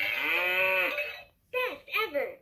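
A toy cash register's small speaker plays one long recorded cow moo that rises and then falls in pitch and ends about a second in. The toy's recorded voice starts speaking again near the end.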